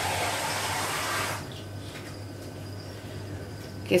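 Water being applied to an insect enclosure, a steady hiss that stops about a second and a half in, leaving a faint low hum.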